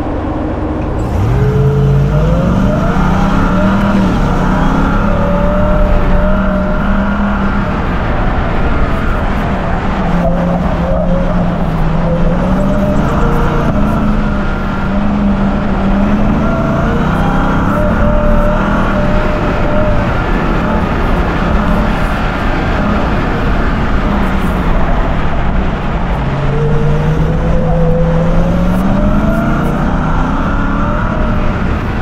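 Ram TRX's supercharged 6.2-litre Hemi V8 launching hard from a standstill about a second in, then revving up and dropping back over and over as the truck accelerates and lifts between corners on a dirt rallycross course, over steady tyre and dirt noise.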